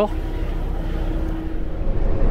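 A semi truck's diesel engine and running noise, heard as a steady low drone with a faint constant hum over it.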